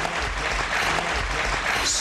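Studio audience applauding, a steady even clapping that fills the pause after a correct answer.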